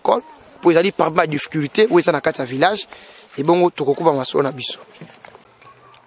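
A cricket's steady high trill behind a man talking; the trill stops shortly before the end.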